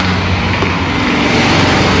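Steady, loud mechanical running noise with a low hum underneath.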